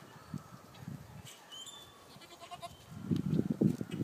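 A goat screaming: a loud, rough, low call that begins about three seconds in and is still going at the end.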